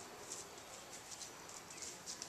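Faint footsteps on grass: soft, uneven swishing steps a few times a second.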